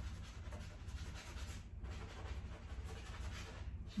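Damp sponge rubbed around on a textured painted canvas: a faint, continuous scratchy rubbing that breaks off briefly about two seconds in and again just before the end. A steady low hum runs underneath.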